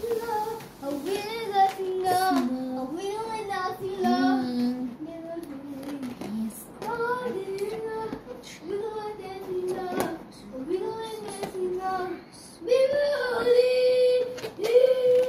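A child singing a tune in short phrases of gliding notes, with louder, longer held notes near the end.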